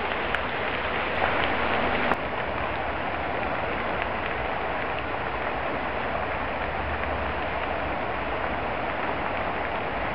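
Steady crackle and hiss of a brush and cottonwood fire burning, with a low rumble underneath. A louder stretch breaks off abruptly about two seconds in.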